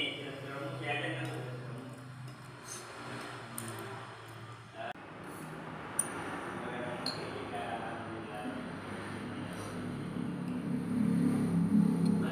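Indistinct voices at low level over a steady low hum, with a single sharp click about halfway through.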